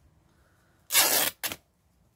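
Laundered sheet fabric torn apart by hand along a scissor snip: a loud ripping tear of about half a second, starting about a second in, followed at once by a brief second rip.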